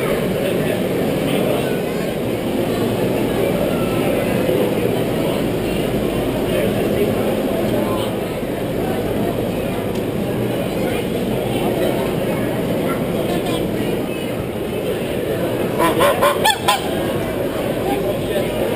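Domestic geese honking: a quick run of about five loud honks near the end, over the steady murmur of a crowd.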